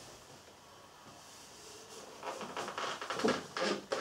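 A man's shoes stepping up onto a wooden block: irregular light knocks and scuffs, starting about two seconds in after a quiet stretch.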